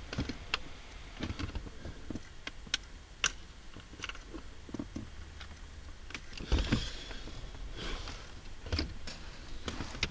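Hands handling the plastic center-console trim and its wiring: scattered small clicks and ticks of plastic parts, with a short scraping rustle about two-thirds of the way through.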